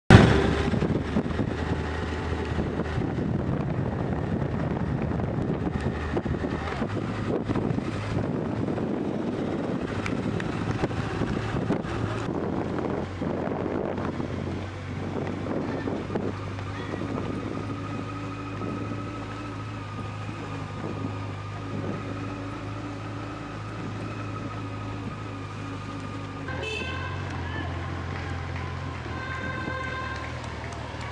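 Outdoor street ambience with motor-vehicle engines running and wind buffeting the microphone. Steady low engine hums change abruptly a few times, and some steady higher tones come in near the end.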